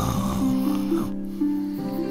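A short cartoon snore at the very start, then soft background music: a held low note under a slow melody of long notes that step up and down.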